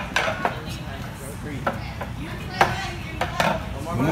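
Rings on a ninja ring-traverse obstacle knocking and clanking against the frame's pegs as they are hung on and lifted off, in sharp separate knocks, several close together at the start and a few more later.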